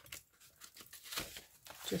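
Small craft scissors snipping through folded paper: a run of short, crisp cuts with light paper rustling, trimming the edge of a paper envelope.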